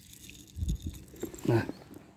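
Dry cat food being tipped out of a plastic jar onto paving stones, with a few low knocks from handling the jar about two-thirds of a second in and one short voiced sound about one and a half seconds in.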